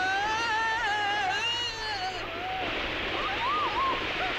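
Heavy rain pouring down through trees and onto rocks. Over it, a man's voice holds one long, wavering cry for the first two seconds, then gives a few short yelps near the end.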